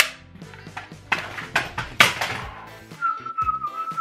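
Plastic toy flintlock pistol being dry-fired: a sharp snap at the start and another about two seconds in, with lighter clicks between. Near the end a single steady whistled note sounds, sliding slightly down.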